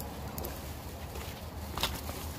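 Steady outdoor background noise with two short clicks, a faint one about half a second in and a sharper one near the end.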